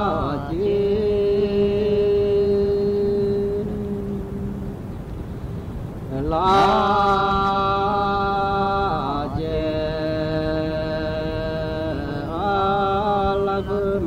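Slow, chant-like singing: a voice holds long notes of about three seconds each, sliding in pitch from one note to the next, over a steady low drone.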